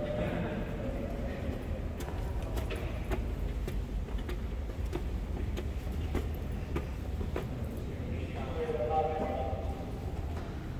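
Footsteps on stone stairs, a scatter of sharp clicks over a steady low rumble. Indistinct voices are heard briefly near the start and again about eight seconds in.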